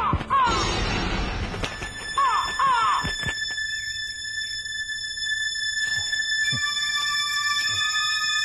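Drama soundtrack effects: a rushing noise with two pairs of short squealing cries in the first three seconds, then a sustained high droning chord held steady to the end.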